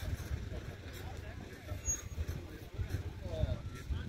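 Indistinct voices of people talking at a distance, over a steady low rumble.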